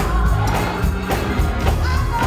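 Live gospel music: a woman singing lead over a church band with bass and a steady beat.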